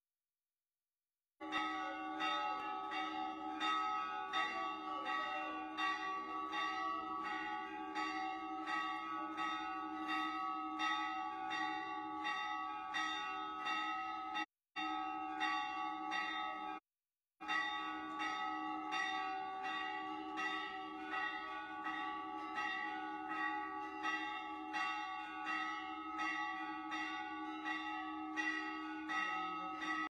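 Temple bells rung without pause during a Hindu aarti: rapid, even strikes, about three to four a second, over a steady ringing of several bell tones. The sound cuts out abruptly to silence for the first second or so, and twice briefly around the middle.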